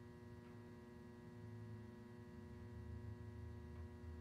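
Near silence: a faint, steady electrical hum with several fixed tones and no other events.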